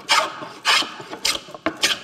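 Wooden scrub plane hogging thick shavings off an oak board across the grain: four quick strokes about two-thirds of a second apart.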